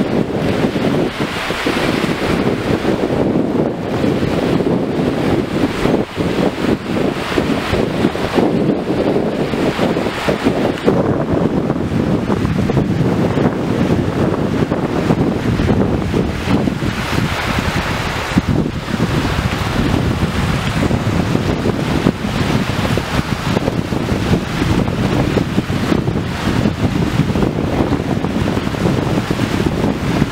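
Wind buffeting the microphone over small waves washing onto the shore: a steady rushing that swells in gusts.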